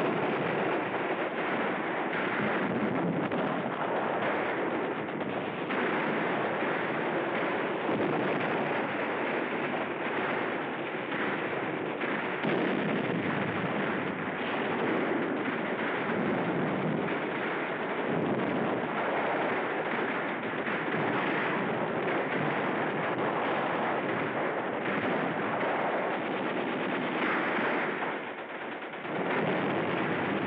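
Dense, continuous battle gunfire: machine-gun and rifle shots running together into an unbroken rattle. It dips briefly about two seconds before the end.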